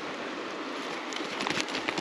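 Steady rush of a shallow creek, with small splashes and patters in the second half as a hooked rainbow trout flops in a rubber-mesh landing net.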